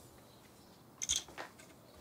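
Near silence: quiet room tone, broken by two soft, short sounds about a second in.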